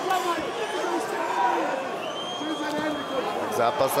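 Arena crowd noise with men shouting over one another, cornermen and spectators calling out during ground-and-pound in an MMA cage.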